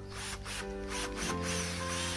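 Background music with steady held notes, over short rustling scrapes of hands handling the plastic body of a Ryu RCD 12V cordless drill, mostly in the first half.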